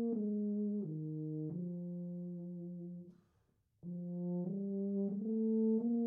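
B&S PT6P CC tuba playing a slow line of held notes that move step by step, with a brief break for a breath about halfway through before the line carries on.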